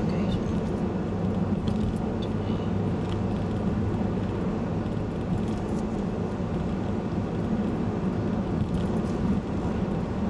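Steady road noise inside a moving car's cabin at cruising speed: tyre rumble on asphalt and a constant low drone from the drivetrain, unchanging throughout.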